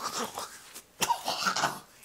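A man coughing and sputtering as he spits out a mouthful of salt, in two rough bursts, the second and louder about a second in.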